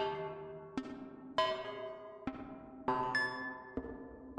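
Behringer ARP 2500 modular synthesizer playing a slow, self-generating rhythmic pattern of two-oscillator FM notes. There are about seven short pitched notes in four seconds, each starting sharply and decaying into reverb from an EHX Cathedral pedal.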